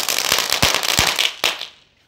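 A chatar-patar firecracker spraying sparks with a dense crackling hiss, broken by a few sharp pops. It dies away about a second and a half in.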